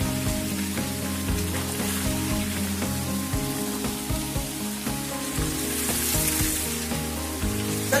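Steady hiss of a small waterfall splashing into a rock pool, with background music playing under it.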